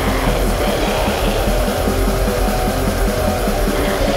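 Black metal music: distorted guitars, bass and drums played as a dense, loud wall of sound, with a fast, even pulse running underneath.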